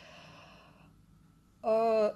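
A woman's breathy exhale that fades out over about a second, then a short held vocal sound near the end.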